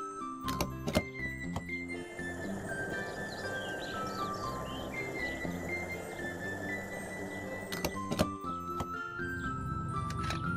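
Cartoon sound effect of rocket fuel being pumped through a hose: a couple of clicks as the hose connects, then a steady rushing of liquid for about six seconds, ending with two more clicks. Background music plays throughout.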